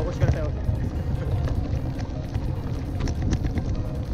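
Wind buffeting the action camera's microphone and bicycle tyres crunching over a gravel path while riding, a steady low rumble with scattered small clicks.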